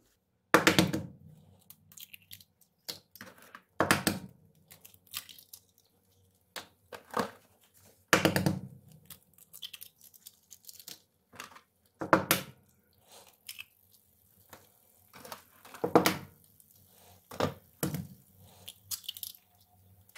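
Eggs cracked one after another on the rim of a non-stick frying pan: five sharp cracks about four seconds apart, with shells crunching and being pulled apart in between.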